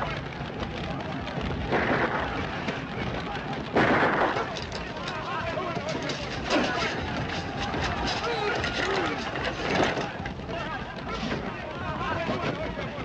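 Film soundtrack of a struggle beside a fire: a steady rush of noise, with about four sharp bangs, the loudest about four seconds in, and men's wordless shouts and grunts.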